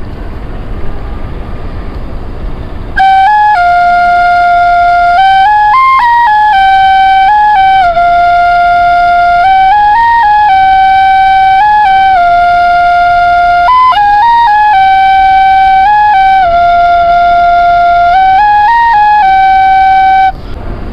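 Bamboo flute playing a slow melody of long held notes that step up and down, one clear line of tone. The flute comes in about three seconds in, after low background rumble.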